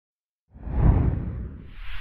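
Two whoosh sound effects for an animated title graphic. A deep, heavy whoosh swells in about half a second in and fades, and a second, higher whoosh follows near the end.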